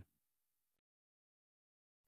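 Near silence: a pause between stretches of narration.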